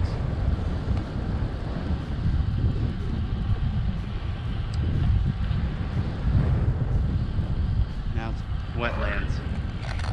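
Wind buffeting a GoPro's microphone on a moving bicycle, a steady low rumble with road noise; a brief voice comes in near the end.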